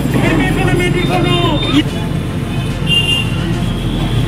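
A voice speaking through microphones and loudspeakers, strongest in the first two seconds, over a steady low hum.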